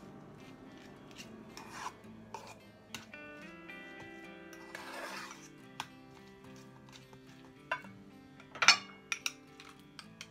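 A metal spoon scraping and clinking against a metal mixing bowl as mashed egg yolks are stirred together with mayonnaise, with a sharper, louder clink near the end. Background music comes in about three seconds in.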